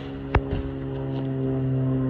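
A steady low mechanical hum, like an engine or machine running nearby, slightly louder toward the end, with a single sharp click about a third of a second in.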